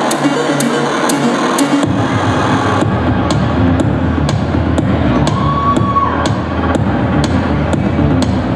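Electronic rap backing beat played from the DJ table, with no vocals: a steady high tick about two and a half times a second, and a deep bass line that comes in about two seconds in.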